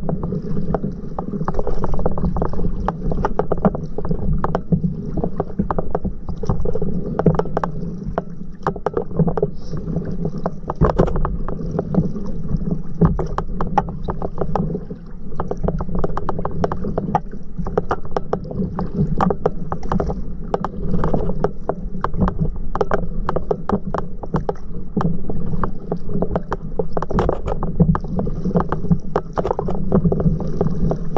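Stand-up paddleboarding on a river: paddle strokes splashing through the water and water slapping against the board, with many small irregular knocks and a steady low rumble underneath.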